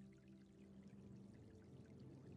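Faint ambient meditation music, its steady low pad thinning out, under a soft trickle of water drips.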